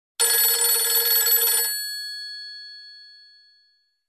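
Old-style telephone bell ringing: a rattling ring of about a second and a half that stops abruptly, leaving the bells ringing on and fading away.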